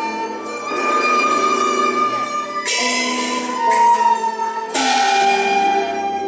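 Instrumental accompaniment to a Cantonese opera song: string instruments playing held melodic notes, with two loud crashes, one about three seconds in and one about five seconds in.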